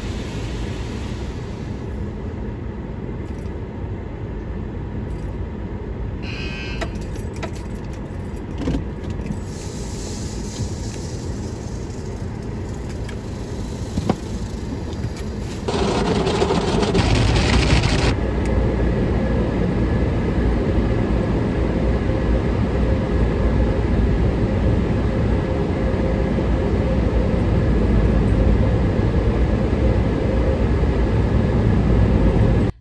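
Ryko automatic car wash heard from inside the car: water spray and wash machinery running steadily. About halfway through there is a couple of seconds of strong hiss, after which a deeper, louder rumble carries on.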